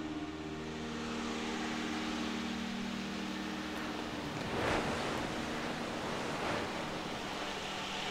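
Ambient music passage: a rushing, surf-like noise wash that swells twice in the second half, while sustained bell-like tones fade out over the first few seconds.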